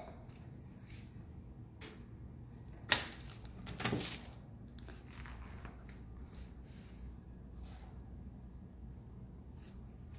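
A homemade Rube Goldberg hamster treat feeder running: a light tap, then a sharp knock about three seconds in, the loudest, and a short rattle about a second later as its ball and parts strike and drop. After that only faint room tone.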